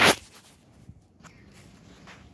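A brief loud rustle of handling noise on the phone at the very start, as a hand brushes close over it, then quiet background with a few faint ticks.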